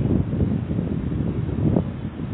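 Wind buffeting the microphone, a gusty low rumble that rises and falls.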